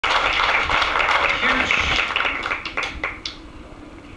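Audience applauding, loud at first, then thinning to a few scattered claps and dying away after about three seconds.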